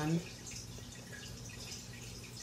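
A spoken word ends just after the start. Then comes quiet room tone with a steady low hum and a few faint light ticks and rubs as a sneaker is turned over in the hands.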